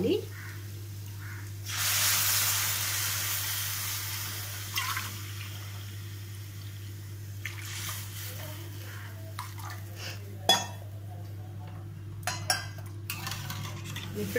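Water poured from a steel vessel into a hot steel kadai of oil-fried cashews, peanuts and vegetables: a loud hiss about two seconds in as it hits the oil, fading over a few seconds. Later a sharp clink and a few knocks of a spoon against the steel pan, over a steady low hum.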